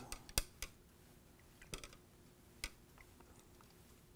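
A few faint, sharp clicks, about five spread over the first three seconds: a stirrer tapping against the glass tank as milk is swirled into the water.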